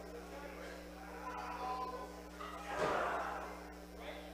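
Faint ambience of a small wrestling hall: scattered crowd voices over a steady electrical hum. A brief louder burst of noise comes about three seconds in.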